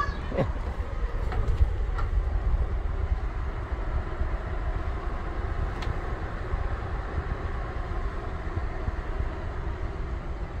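Wind buffeting the phone's microphone: a steady low rumble with uneven gusts.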